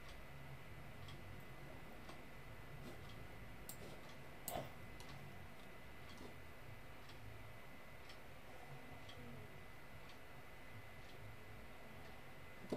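Quiet room tone with a faint steady high whine and a low hum, broken by faint, irregular ticks and one sharper click about four and a half seconds in.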